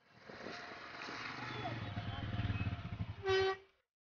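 Small farm tractor engine chugging with a fast low pulse, growing louder, then a short horn honk about three seconds in.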